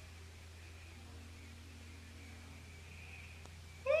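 Background of a live recording between spoken phrases: a steady low hum under faint hiss.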